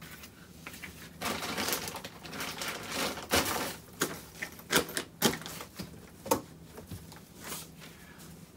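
Clothes and small items being pushed and rearranged by hand inside an open hard-shell suitcase: rustling of fabric and packaging with irregular clicks and knocks against the case.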